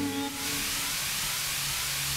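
A steady hiss that holds evenly and then cuts off abruptly at the end.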